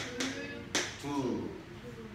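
A man's voice in short spoken syllables, with a few sharp clicks in the first second.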